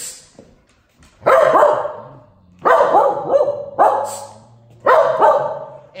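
Cocker Spaniel barking loudly, four barks a little over a second apart, each fading out before the next: protesting at being kept back from the front door.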